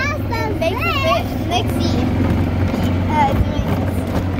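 Small open cart being driven along a dirt track: a steady low drone from its motor and the ride, with children's voices over it in the first couple of seconds.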